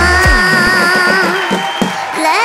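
Live stage band music with a long held melodic note; the low drum beat drops out about half a second in, leaving the held note over lighter accompaniment.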